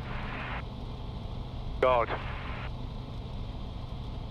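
Light aircraft's piston engine idling steadily with the propeller turning, heard from inside the cockpit.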